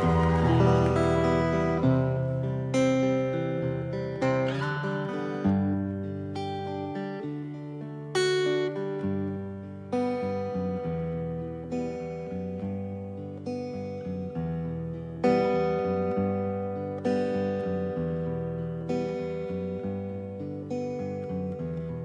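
Acoustic guitar playing a slow introduction: chords struck about every one and a half to two seconds, each left to ring and fade.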